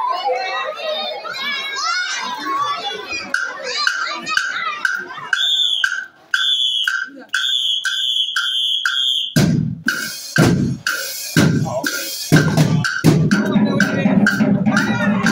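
School drumline playing. Loud bass-drum and snare hits come in about nine seconds in over a high tone that pulses about twice a second. Crowd chatter is heard at the start.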